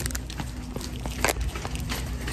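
Handling noise from a phone camera held against clothing: rubbing and a few light clicks over a low steady rumble of background.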